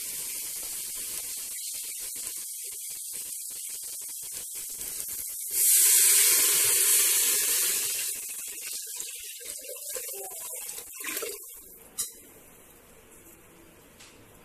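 Onion-tomato masala sizzling faintly in a pressure cooker pot, then, about five seconds in, water poured in from above: a sudden loud gush and hiss for a couple of seconds that dies away. A sharp click near the end.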